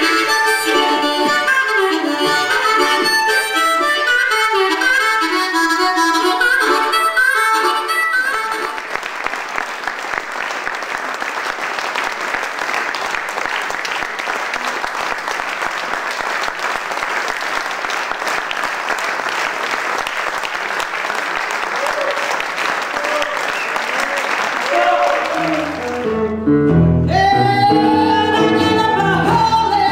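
Blues harmonica played into a microphone, a quick run of notes that ends about eight seconds in. Audience applause follows for about fifteen seconds. Near the end a guitar starts playing.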